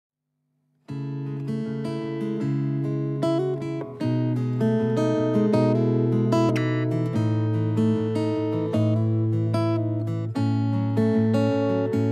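Acoustic guitar playing a song's intro, beginning about a second in: notes picked in a steady pattern over ringing low bass notes, with the chord changing every few seconds.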